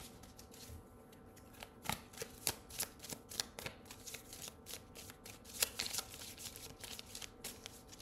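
A deck of tarot cards being shuffled by hand: a quiet, irregular run of soft card snaps and slides.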